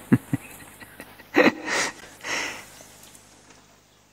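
A man's breathy exhales and sniffs close to the microphone, the tail of a laugh: two or three short puffs of breath in the middle, fading away. Two soft low thumps come right at the start.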